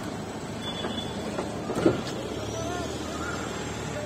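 Steady engine and road noise from SUVs running close by in street traffic, with a white SUV drawing up alongside.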